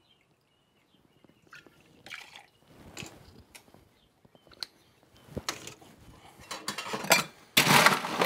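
Cognac poured from a bottle into a metal jigger and tipped into a stainless steel shaker tin, with small sharp clinks of glass and metal as the bottle and jigger are handled and set down on the bar. A louder clatter comes near the end.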